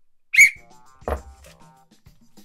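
One short, sharp blast on a small hand-held whistle, blown as a referee's kick-off whistle for the first half. A thump and quiet background music follow about a second later.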